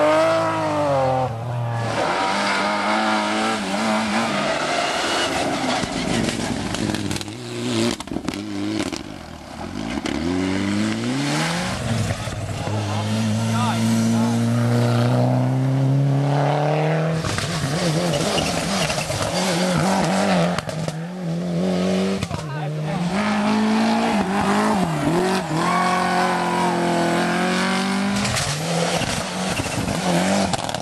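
Rally cars passing one after another at speed, their engines revving hard, with the pitch climbing and then dropping sharply at each gear change.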